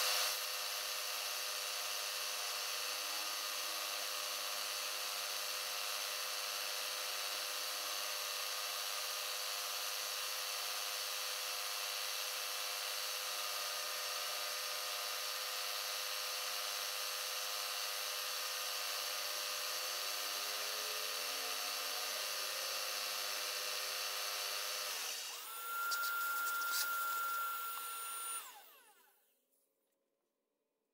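Milling machine running steadily with an end mill in the spindle, spot-facing the bolt holes of a small cast steam-engine base. About 25 s in the sound changes and gets slightly louder with a steady whine, then fades out about a second before the end.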